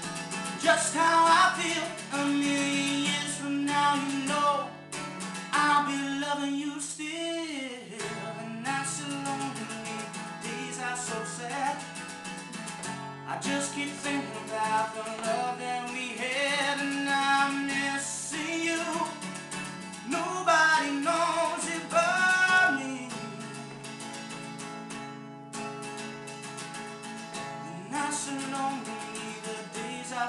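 Acoustic guitar strummed in steady chords while a man sings along, a solo voice-and-guitar performance.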